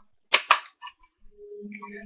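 Two sharp plastic clicks in quick succession, then a few faint ticks, as the magazine release button of a toy Colt 45 water pistol is pressed and the magazine comes out.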